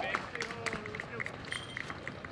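Voices of players and onlookers calling out on an outdoor baseball field, with scattered sharp clicks.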